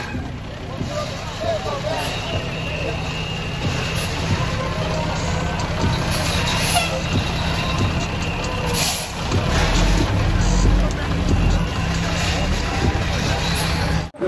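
Heavy diesel engine of a sanitation dump truck running as the truck moves off across a wet street, getting louder about ten seconds in. Short hisses come twice in the middle.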